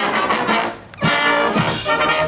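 Military fanfare band playing a march on brass instruments while marching, held brass chords with a short break between phrases just before the middle.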